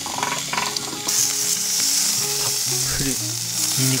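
Beef rump steak sizzling on a gas grill grate, a steady hiss that grows sharply louder about a second in.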